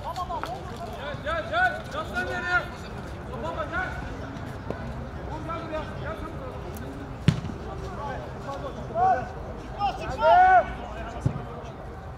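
Footballers shouting to one another on an outdoor artificial-turf pitch, loudest near the end. A sharp thud of the football being struck comes about seven seconds in, and a softer one just before the end.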